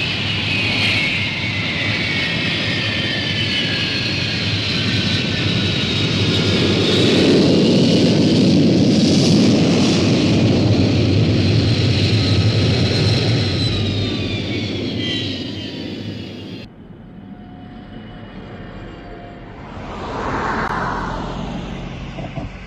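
Jet aircraft engines as a large jet comes in to land: a high whine falling slowly in pitch over a rumble that builds to its loudest midway. The engine sound cuts off abruptly about three-quarters of the way through, leaving a quieter background with a brief swell near the end.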